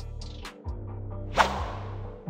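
Soft background music with a single whoosh transition effect, a fast sweep about one and a half seconds in.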